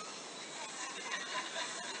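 Faint chuckling and murmuring voices.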